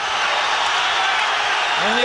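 Large arena crowd cheering loudly and steadily at a boxing knockout.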